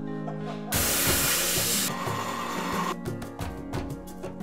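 Background music with steady tones. About a second in, a loud hiss cuts in, lasts about a second, and then fades out, followed by a quick run of short clicks.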